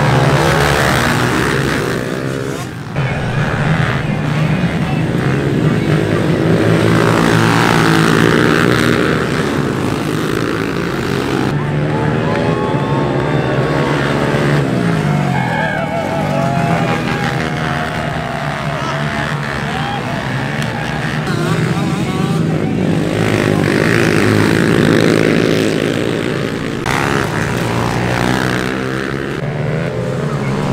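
Several small pit bike engines revving at once, their pitch rising and falling over and over as the riders open and close the throttle through the turns.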